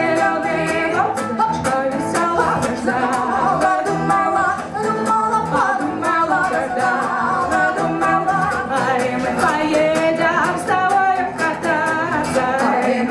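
Two women singing a Russian Romani (Gypsy) song into microphones. They are accompanied by strummed acoustic guitar and a bowed cello holding low notes underneath.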